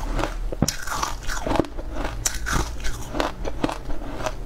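Chewing of crunchy green frozen ice close to the microphone: an irregular run of crisp crunches, several a second.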